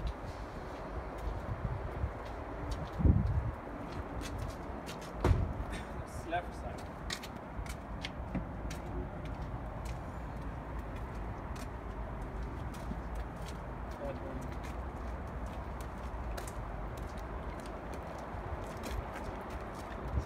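Hydraulic walking-floor drive of an aggregate trailer running: a steady low hum with scattered clicks, and two loud knocks about three and five seconds in.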